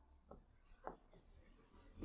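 Near silence, with a few faint short taps and scratches of a pen writing a word on a board.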